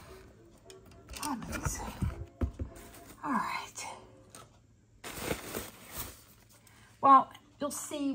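Crumpled packing paper rustling and crinkling in a cardboard box as it is opened and handled, in several short bursts.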